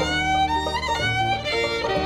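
Bluegrass fiddle playing a melody in sustained bowed notes over lower string-band accompaniment.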